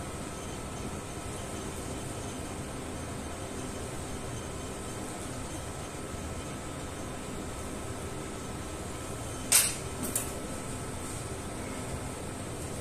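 Steady ventilation hiss and hum of the room, with two sharp clicks about half a second apart near the end from the steel surgical instruments (needle holder and forceps) in use while the suture is knotted.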